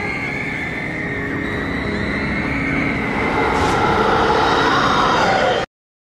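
Dramatic soundtrack sound effects: a dense, steady rushing noise with long wailing tones that glide up and down, swelling louder about three seconds in and then cutting off suddenly near the end.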